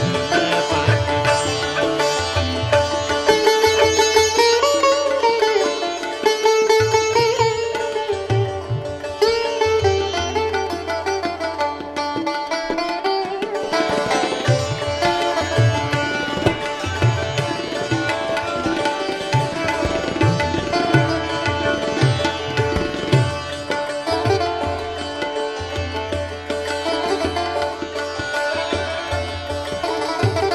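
Sitar playing gliding, ornamented melody lines in Hindustani style, with tabla giving deep bass strokes underneath, in a Persian–Indian classical improvisation.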